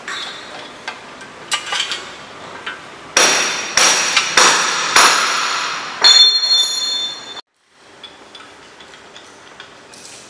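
Metal hardware on an aluminum tire rack knocking together during assembly. A few light clicks come first, then about half a dozen sharp metallic clanks in the middle, each ringing briefly, before the sound cuts off abruptly.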